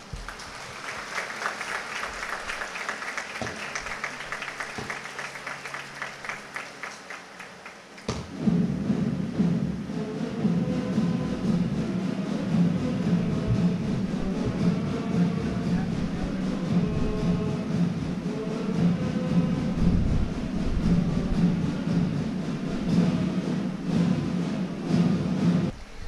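Audience applause, with rapid clapping, giving way abruptly about eight seconds in to instrumental music.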